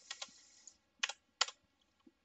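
A few separate keystrokes on a computer keyboard: a couple of faint taps at first, then two louder clicks about a second in and half a second apart.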